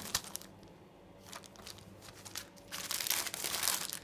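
Thin plastic packaging bags crinkling as they are handled: a few light rustles at first, then a louder stretch of dense crinkling in the last second or so.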